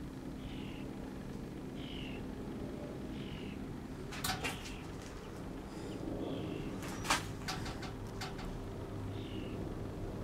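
Faint short high chirps, falling in pitch, about five of them a second or more apart, typical of a small bird calling. There are two sharp knocks around the middle, over a low steady hum.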